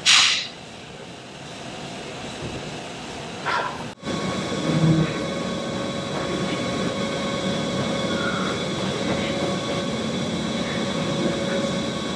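Steady hum and rush of a gym's air conditioning, louder and fuller after an abrupt change about four seconds in, with a brief hiss at the very start.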